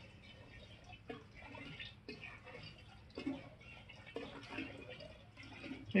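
Water poured in a thin stream into a plastic jug of gasoline, heard as a faint trickle with soft splashes about once a second.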